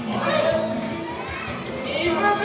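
Audience voices: children calling out and chattering in the stands.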